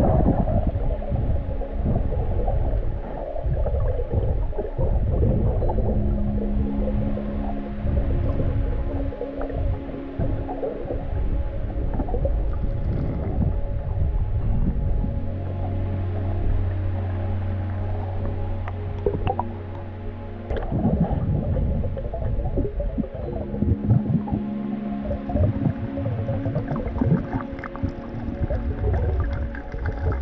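Background music with long held low notes.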